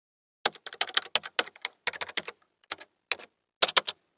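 Typing sound effect: a rapid, uneven run of keystroke clicks starting about half a second in, with a brief pause midway and a quick final flurry near the end.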